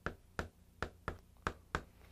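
Chalk tapping against a chalkboard while characters are written: about six short, faint clicks spread over two seconds.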